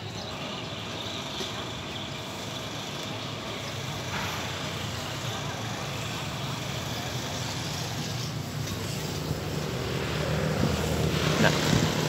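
A vehicle engine running steadily as a low hum, growing louder over the last couple of seconds.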